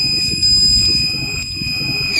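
Logo-animation sound effect: a steady high-pitched electronic tone held over a low rumbling noise.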